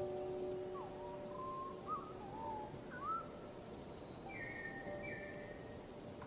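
A songbird's whistled notes: several short sliding whistles in the first half, then two higher falling notes later, over faint held music notes that die away partway through.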